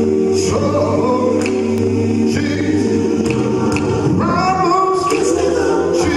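Gospel song: choir-style voices sing over held, sustained chords, with a sung line rising above them about four seconds in.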